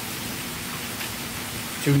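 Steady even background hiss with a faint low hum underneath.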